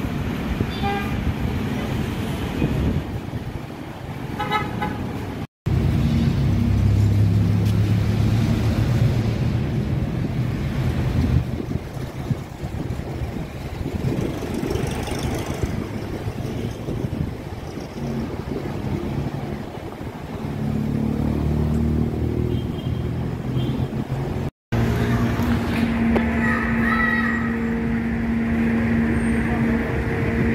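City street traffic: engines of passing vehicles running, with short car-horn toots about a second in and again about four seconds in.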